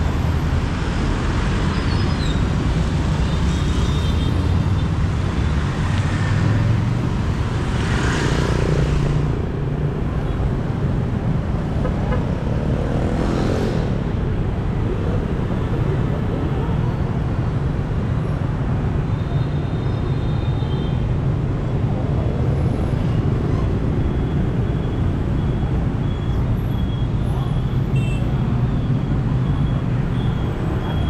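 Busy street traffic, mostly motorbike and scooter engines with cars, a steady din. Two vehicles pass close, about eight seconds in and again around thirteen seconds.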